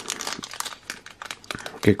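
Foil wrapper of a sealed trading-card pack crinkling as it is turned over in the fingers, a dense run of fine irregular crackles.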